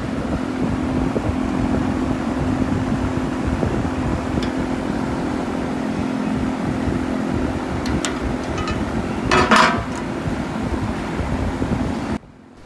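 Steady mechanical hum with a low rumble, and a brief scratchy scrape about nine and a half seconds in.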